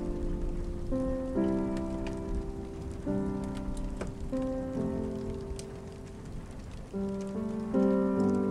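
Steady rain with a few sharp drips, under slow, gentle instrumental music whose sustained notes change every second or so.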